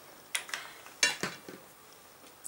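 Dry pasta pieces clinking against a ceramic bowl as they are picked out by hand: two sharp clinks about a second apart, then a fainter one.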